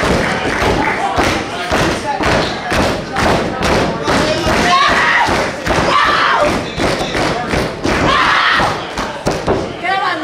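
Repeated thuds and slaps on a pro wrestling ring's canvas, coming several times a second at irregular spacing, with voices shouting over them.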